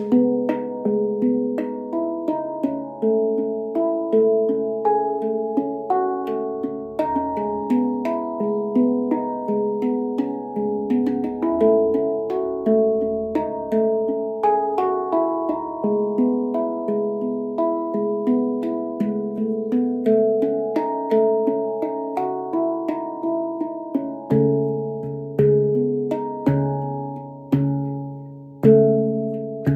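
Stainless-steel MASH handpan tuned to C# Annaziska 9, played with the hands: a steady stream of struck notes, each ringing on with overtones. Deeper bass notes join about three quarters of the way through.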